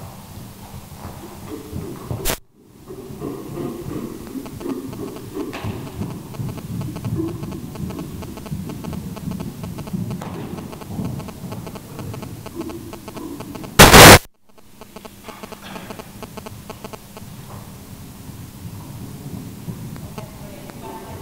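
Low, indistinct indoor-arena background with irregular low rumbling. A sharp crack comes about two seconds in, and a very loud, half-second blast of noise comes about fourteen seconds in. Each cuts briefly to silence right after.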